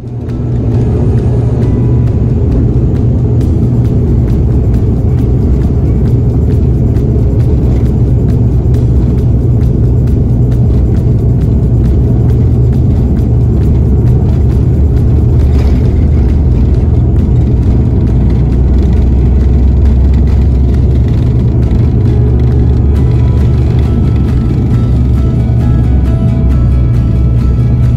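Steady, loud drone of a high-wing turboprop airliner's engines and propellers heard inside the passenger cabin as the aircraft taxis, with deep rumble from the airframe and wheels.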